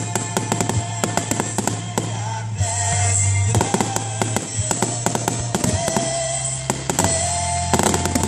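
Aerial fireworks bursting and crackling, dozens of sharp reports in quick succession, with a louder bang near the end. Music plays steadily underneath.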